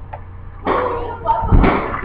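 Indistinct voices with a low thump about one and a half seconds in, over a steady low hum.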